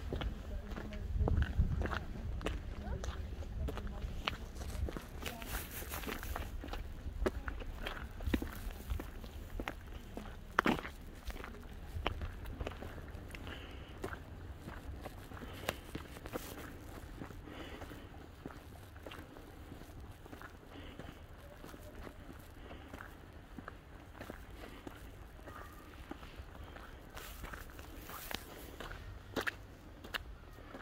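Footsteps of a walker on a wet, slushy road, repeated short steps at a walking pace, over a low rumble that is strongest in the first few seconds.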